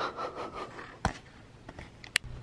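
Brief rustling and scraping, then a single sharp click about a second in, followed by a few faint clicks.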